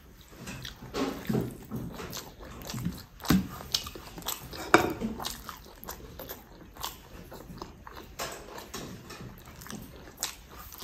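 Close-up eating sounds: a person chewing a mouthful of rice and egg curry, with wet mouth clicks and smacks, and fingers squishing and gathering rice on a steel plate. The sounds come irregularly, busiest in the first half, with one sharp click about five seconds in the loudest.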